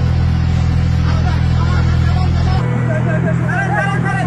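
Escorts road roller's diesel engine running with a steady low hum, its deepest part dropping away about two and a half seconds in.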